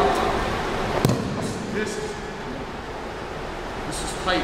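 A single sharp slap about a second in, as a practitioner hits the mat during a pin, over the hum of a large hall and faint voices.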